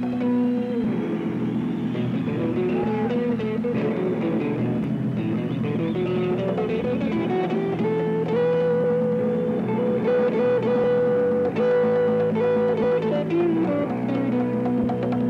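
Instrumental break with strummed guitar chords under a second guitar picking a melody line that climbs step by step and then holds a high, repeated note near the end.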